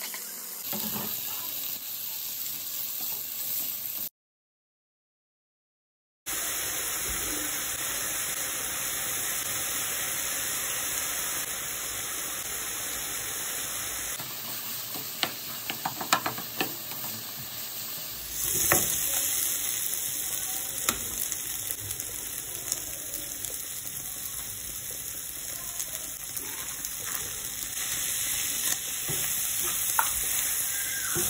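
Diced chicken and onion sizzling steadily in a frying pan while a spatula stirs and scrapes it, with a run of sharp taps of the spatula about halfway through. The sound drops out completely for about two seconds near the start.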